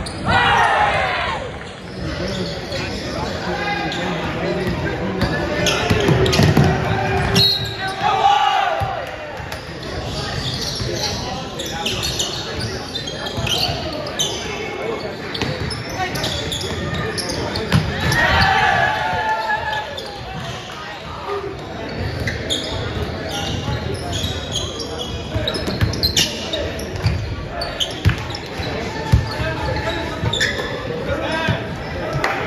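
Basketball game in a gym: the ball bouncing on the hardwood floor again and again, with players and onlookers shouting in the echoing hall, loudest just after the start and again around the middle.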